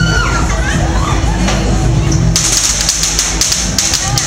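Loud music with a steady bass beat and the voices of a street crowd; a little past halfway in, a rapid, irregular crackle of sharp pops starts, from small fireworks going off.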